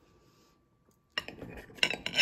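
Metal cutlery clinking and scraping against a plate, a quick run of clinks starting about a second in, the loudest near the end.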